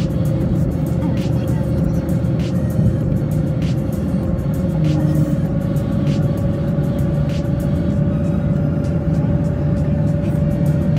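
Car driving along a road, heard from inside the cabin: a steady hum of engine and tyres with one held tone that rises very slightly, and music playing along with it.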